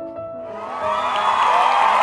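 Background music with a crowd cheering sound effect that swells in about half a second in and stays loud.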